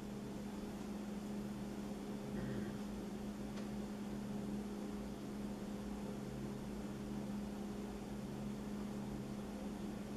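Steady electrical hum over an even hiss of room tone in a small workshop, with a faint tick about three and a half seconds in.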